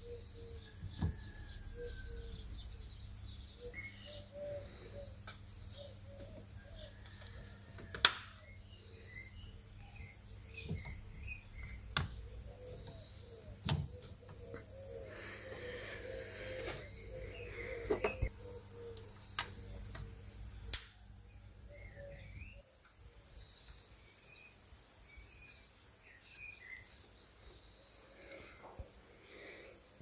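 Birds chirping and singing faintly throughout, with a few sharp clicks scattered among them. Under it runs a low steady hum that stops about three-quarters of the way through.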